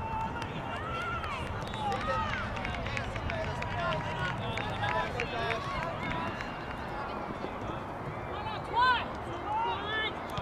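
Several voices shouting and calling across a youth soccer match, overlapping one another, with a louder shout about nine seconds in.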